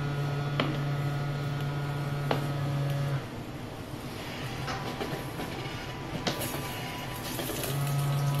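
Automatic cooking machine running its cycle: a steady motor hum that stops about three seconds in and starts again near the end, with a few light clicks.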